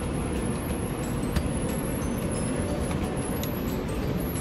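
Steady low rumbling hum of commercial kitchen fans, with a faint high whine, and a light click about a third of the way in.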